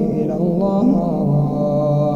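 A man's solo Quran recitation in melodic tajweed style, the voice moving through ornamented pitches and then settling into a long, lower held note about a second in.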